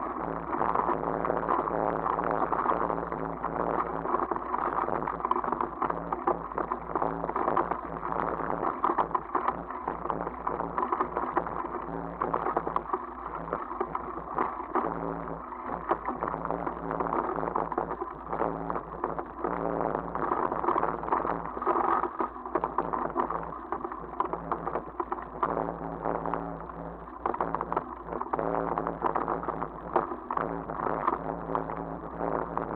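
Bicycle rolling over a rough dirt and gravel track: a steady crunching noise from the tyres, broken by many small rattles and knocks from the bike over the bumps.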